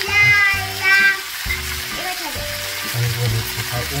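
Background music for about the first second, then sliced sausages and vegetables sizzling steadily in a hot frying pan under a freshly poured sauce.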